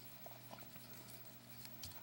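Near silence: a faint low room hum with a few soft, small ticks.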